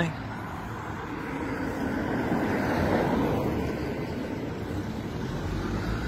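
Street traffic noise with a vehicle passing, its sound swelling to a peak about halfway through and then fading.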